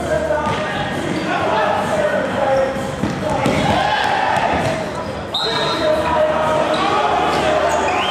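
Ball kicks and bounces echoing off the floor and walls of a sports hall during an indoor football match, over the continuous voices and calls of players and spectators.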